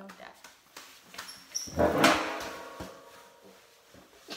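A sharp knock about two seconds in, with a drawn-out vocal cry that fades away over about a second. Light knocks and rustling of people moving in their seats come before it.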